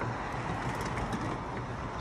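Steady rolling rumble and street noise as a small wheeled sidewalk delivery robot drives off along the pavement.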